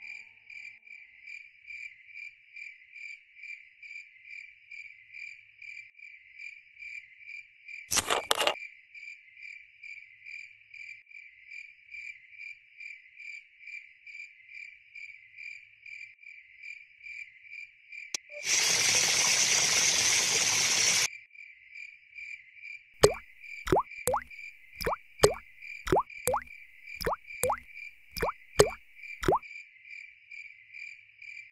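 Crickets chirping steadily, about two to three chirps a second. A short loud burst of noise breaks in about a quarter of the way through, and a louder rushing hiss lasts about two and a half seconds just past the middle. Over the last seven seconds comes a quick run of a dozen or so sharp pops.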